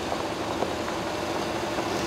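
Cars driving slowly on a gravel road, engines running with a steady, even noise.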